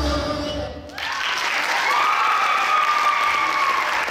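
The recorded song cuts off just under a second in, and the audience breaks into applause, with one long held cheer sounding over the clapping.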